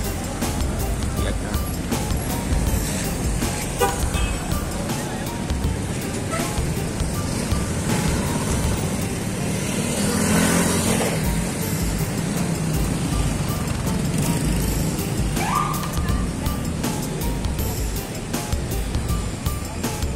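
City street traffic: cars and motorcycles running and passing close, with one vehicle passing louder about halfway through and a short rising tone, like a horn, a little after.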